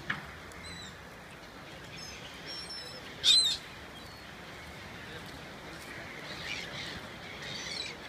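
Gulls calling over a lake: scattered short, high calls, one much louder call about three seconds in and a cluster of calls near the end, with a brief sharp click at the very start.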